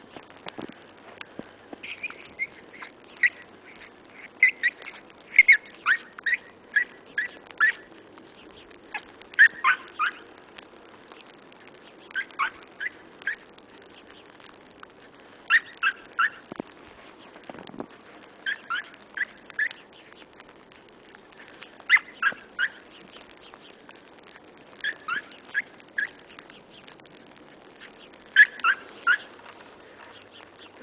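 Short high-pitched animal calls in quick runs of several, each run about a second long, repeating every two to three seconds.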